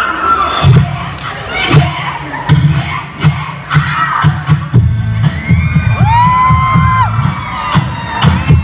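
Loud dance music with a steady, heavy bass beat from a large PA speaker stack, with a crowd of children shouting and cheering over it.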